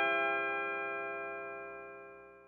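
Final chord on a lap steel guitar ringing out and fading away steadily.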